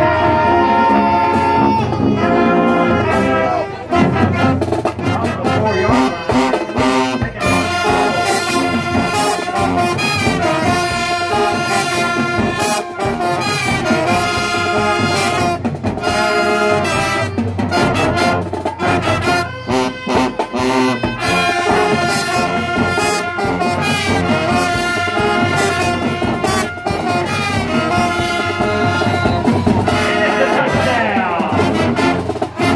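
High school marching band playing loud, steady brass music in the stands: trumpets, trombones, saxophones and sousaphones, with drum hits running through it.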